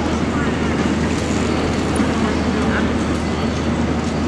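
Busy city-centre street ambience: a steady, even background of urban rumble with the indistinct voices of passers-by.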